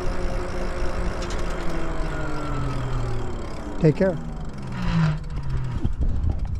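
E-bike riding along a street with a steady rumble of wind and tyres, and a motor whine that slowly falls in pitch over the first few seconds as the bike slows for a turn.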